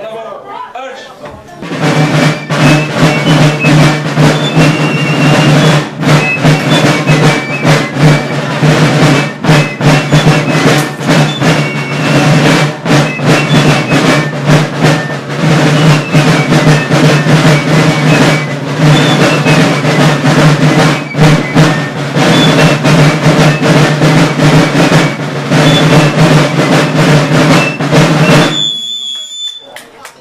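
Marching side drums playing a continuous drum beat with rolls, loud and dense, starting about a second and a half in and stopping shortly before the end.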